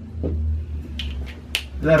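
Marker pen on a whiteboard: a faint scrape of a line being drawn, then two short, sharp strokes about a second in and half a second apart, as an arrow is finished, over a steady low hum.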